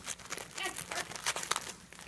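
Gift-wrapping paper crinkling and tearing in quick, irregular crackles as a dog noses and tugs into a wrapped present.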